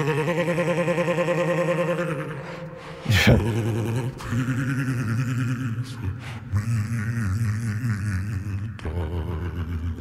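A sung vocal track played back through the Auto-Tune Pro X plugin with an extreme vibrato effect and reverb, the pitch warbling rapidly for the first two seconds. About three seconds in there is a steep swoop in pitch, then a lower, deeper processed voice carries on. It is a deliberately exaggerated, 'totally ridiculous' setting.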